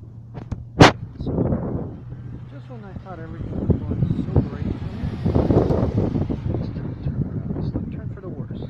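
A sharp click about a second in, a brief voice, then a vehicle passing, its noise swelling and fading over about four seconds.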